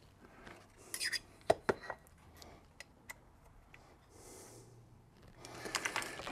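Hands handling an aluminium plate and small metal parts on a workbench: a few sharp clicks and taps about a second in, then a soft brief brushing sound about four seconds in.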